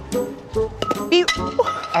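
Background music with a sharp metallic clink that rings briefly, a little under a second in, and a short exclamation near the end.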